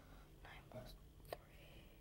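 Near silence: room tone with faint whispering and one small click about a second and a third in.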